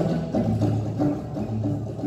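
Live tango quintet of bandoneon, piano, violin, viola and double bass playing a milonga, with a strong, low bass line marking a steady beat.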